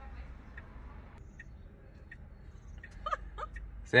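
Quiet background heard from inside a parked car: a steady low rumble with a few faint clicks, and faint voice-like sounds a little after three seconds in.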